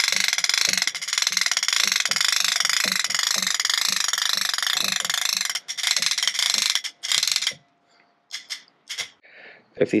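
Hand crank of a 10 ft patio umbrella winding the canopy open: a rapid ratcheting click from the crank gears with a regular beat of about three a second. It stops about seven and a half seconds in, followed by a few separate clicks.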